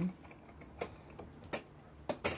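Three light clicks from the wire clasp and glass lid of a clip-top glass jar being handled.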